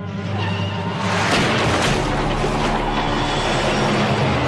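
Cartoon soundtrack: music under a rumbling din that swells up and turns loud about a second in, with a few sharp crashes in it, as an old farm truck bears down in a cloud of dust.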